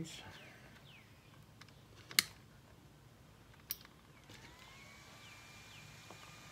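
Sharp plastic clicks of RC car wiring connectors being handled and plugged together, the loudest about two seconds in and another near four seconds. From a little past four seconds a faint electric whine rises and then holds at a steady pitch.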